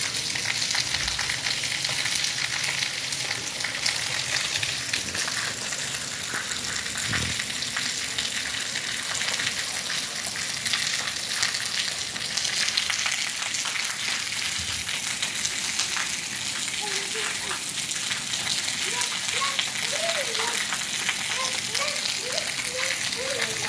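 Light rain falling steadily on wet paving tiles, an even crackling patter.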